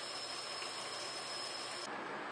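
Tap water running steadily from a kitchen faucet onto granular activated carbon in a mesh strainer, rinsing the carbon until the water runs clear. A faint, steady high whine sits over the water and, with the brightest part of the noise, cuts off abruptly just before the end.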